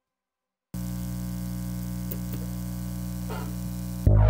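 Silence for under a second, then a steady buzzing electrical hum with static hiss starts abruptly: a lo-fi hum texture used as the opening of an electronic track.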